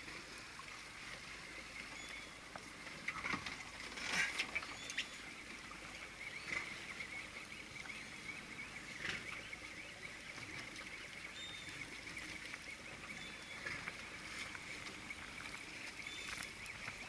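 Open-sea ambience on a fishing boat: a steady hiss of wind and water with waves lapping, broken by a few short knocks or splashes. Faint, short high chirps come through now and then.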